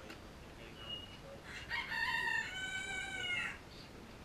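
A rooster crowing once: a single call of about two seconds, starting about one and a half seconds in, that steps down in pitch partway through.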